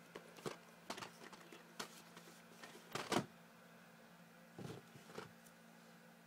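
Faint scattered clicks and knocks of plastic VHS tapes and cases being handled, about six in all with the strongest near the middle, over a low steady hum.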